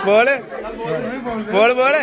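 Speech: voices talking and calling out over background chatter, louder at the start and again near the end.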